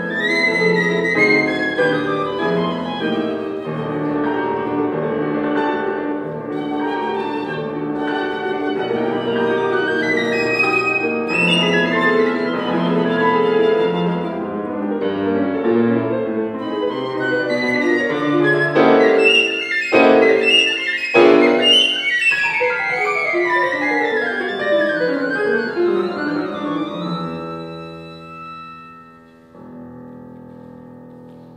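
Piccolo and piano playing a fast, lively sonata movement together. About two-thirds through comes a run of loud accented chords, then descending runs, and the music dies away near the end.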